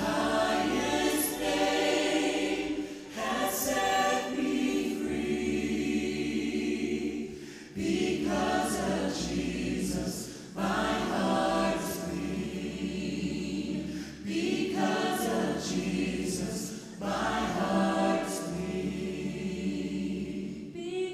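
Mixed men's and women's vocal ensemble singing a cappella in close harmony through microphones, with a low sustained bass line under the upper voices. The phrases break off briefly every two to three seconds and start again.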